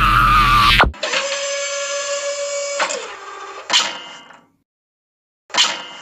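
A cartoon character's scream: wavering at first, then held on one steady pitch for about two seconds before it breaks off. Two sharp hit sound effects with short ringing tails follow, about two seconds apart.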